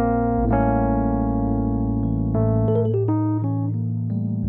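Background music led by an electric piano, with chords and melody notes changing over held bass notes.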